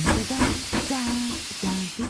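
Cartoon steam locomotive hissing steam.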